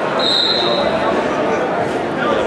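Referee's whistle blown once, a short steady high blast of under a second shortly after the start, signalling the restart of the wrestling bout from the referee's position.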